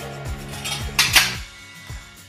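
Metal screw lid turned off a glass jar and set down on a stone countertop, with a short, sharp clinking scrape about a second in. Background music with a repeating bass line runs under it.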